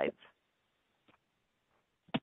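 A spoken word ending in the first moment, then near silence.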